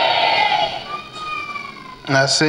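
A crowd cheering and calling out in response, dying down within the first second; a single long voice trails off, falling in pitch, near the end.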